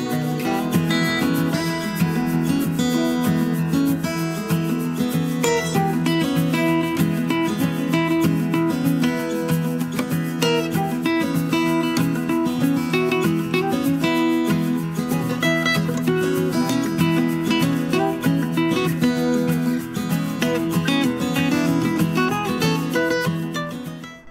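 Background music: an acoustic guitar strummed at a steady, lively pace.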